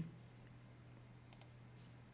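Near silence with a steady low electrical hum, and a faint computer mouse click a little past halfway.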